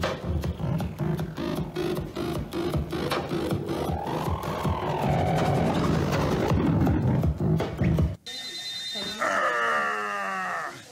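Electronic music made by sweeping barcode scanners over printed barcode charts: rhythmic clicks and tones over a steady beat, which cuts off about eight seconds in. Then a small dog gives a pitched, falling howl near the end.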